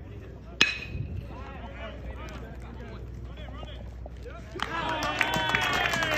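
A baseball bat hits a pitched ball with one sharp crack that rings briefly. Spectators' voices follow, and about four and a half seconds in many voices break into yelling.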